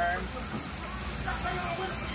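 Beef chunks and sliced onions sizzling steadily in a frying pan, with brief quiet talking over the hiss.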